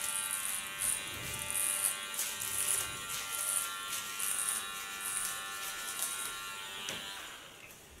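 Electric hair clipper buzzing steadily as it cuts short hair at the nape, with a higher hiss that comes and goes. The buzz fades out about seven seconds in.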